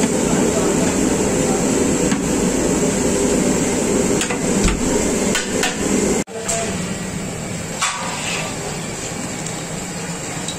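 A long slotted metal ladle stirring prawns in a large aluminium pot, knocking and scraping against the pot's metal sides several times over a steady rushing noise from the gas burner. About six seconds in the sound drops out abruptly and a quieter background with a few light clicks follows.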